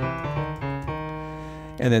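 Software piano (Pianoteq plugin) playing a few notes in quick succession, triggered by typing on a computer keyboard, each note ringing on and fading out before a voice comes in near the end.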